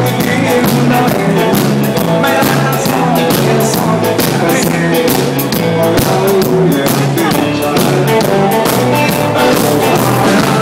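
Swedish dansband playing live on stage: electric bass, drums and guitar in a steady rock-and-roll beat.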